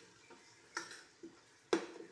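A series of short, sharp knocks, about two a second and evenly paced, some louder than others, the loudest near the end.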